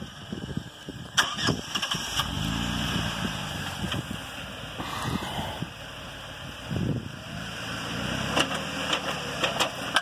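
The 3.8-litre V6 of a 2009 Jeep Wrangler JK revving up and easing off several times in gear while two diagonally opposite, unloaded tires spin free: the Eaton Trutrac differential gets no resistance to work against and sends no drive to the wheels with traction. A few sharp clicks break through.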